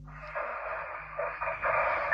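Hissing, crackly noise coming through a video call's audio, cut to a thin telephone-like band, with a few faint clicks.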